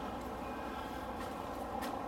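Quiet, steady outdoor background noise with a single faint click shortly before the end.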